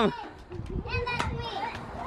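Children playing: kids' voices and commotion, quieter than the shouts around them, with a few short knocks.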